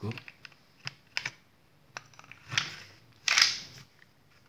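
Hand-handling of a Stoeger Cougar 9 mm pistol being reassembled, the slide worked back onto the frame: a few sharp metal clicks in the first second and a half, then two longer metal sliding scrapes.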